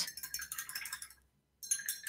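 Two short runs of quick, light clinks with a faint ring: a paintbrush knocking against a hard pot or jar as it is put aside.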